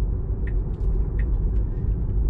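Steady low rumble of tyre and road noise heard inside a moving car's cabin at city speed, with a few faint ticks.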